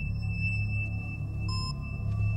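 Eerie suspense film score: a low drone under a sustained high tone, with a short, brighter note about one and a half seconds in.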